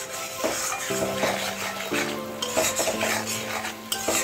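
Metal spatula stirring and scraping sliced onions and spices frying in oil in a metal karahi, with repeated scrapes and clinks against the pan over a steady sizzle.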